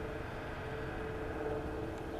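Steady outdoor background noise: a low rumble with a faint, steady hum, like distant traffic or an idling engine.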